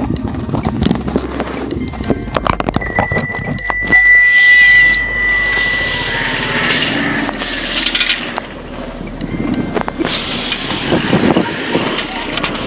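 A bicycle bell rung with a rapid run of strikes about three seconds in, then ringing on for a couple of seconds, over continuous street and riding noise.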